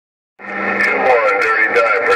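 Received transmission over a President HR2510 radio's speaker: it opens with a hiss and a low steady hum just under half a second in, and a thin, narrow-sounding voice comes through from about a second in.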